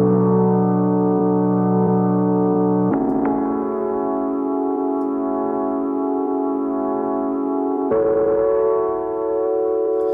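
A melody loop of sustained chords, time-stretched and slowed by Ableton Live's Beats warp mode. The chords change about three seconds in and again near eight seconds. The stretching makes it stutter on some of the parts.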